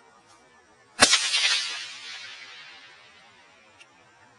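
A single sharp whip crack about a second in, from a hesitation crack, followed by a ringing tail that fades over about two seconds.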